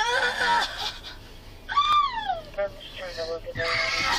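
A woman wailing and moaning without words. About two seconds in comes a cry that swoops up and then falls away, followed by a lower, held moan.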